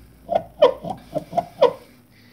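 Dual-mass flywheel being rocked back and forth by hand, its two halves knocking against each other in a series of short, ringing metallic knocks, about four a second. The knocks come from the free play between the flywheel's primary and secondary masses, play that even new dual-mass flywheels can have.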